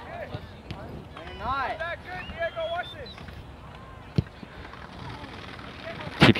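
Voices of players calling across the field, then a single sharp thud about four seconds in: a soccer ball being kicked.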